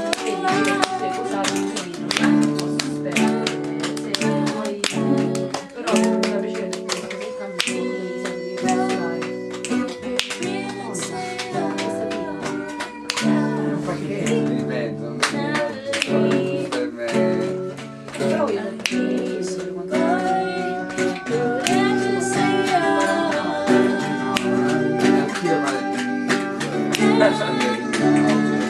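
Guitar strummed in a steady rhythm of chords, with a voice singing along.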